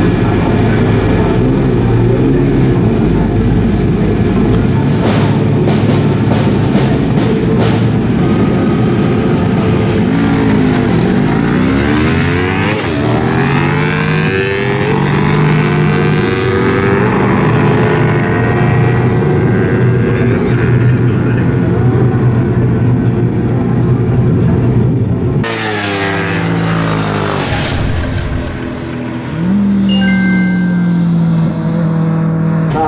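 Two motorcycles, a Honda CBR250RR parallel twin and a Honda NC700X, revving at a drag strip start line, then launching hard and accelerating away, their engine pitch sweeping up and down through the gear changes.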